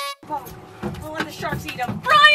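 Excited voices calling out over each other, with a very short dropout right at the start.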